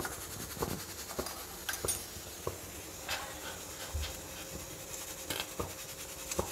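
Broth simmering in a stainless steel pot on a gas burner: a steady low hiss with scattered soft ticks and pops, and one dull low thump about four seconds in.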